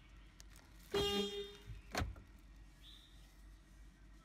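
Toyota Fortuner gives a short beep about a second in, then a sharp click about a second later. These are the car's confirmation signals during manual programming of its remote key.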